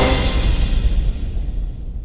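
The last chord of a short logo jingle ringing out and fading away, the high end dying first.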